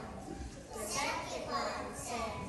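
A group of young children's voices together, part way through a chanted song with hand motions.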